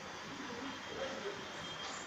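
Faint, steady background noise with no distinct event.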